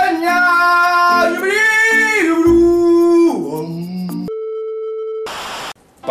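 A voice sings long held notes that slide up and down, ending in a falling glide about three seconds in. Then a steady electronic beep tone sounds for about a second, followed by a short burst of static hiss and a sudden cut to silence just before the end.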